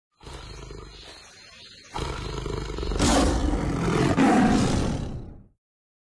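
Tiger growl and roar sound effect: a low growl, then louder roaring from about two seconds in that swells twice and fades away shortly before the end.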